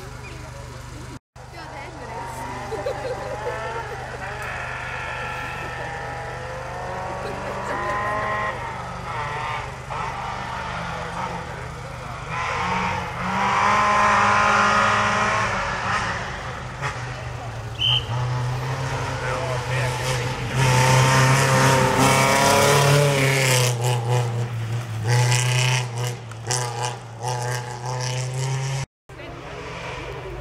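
A race car's engine revving hard and changing gear repeatedly as it drives a gravel hill-climb stage, loudest as it passes close in the middle and latter part.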